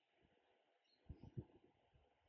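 Near silence: room tone, with a few faint soft knocks about halfway through.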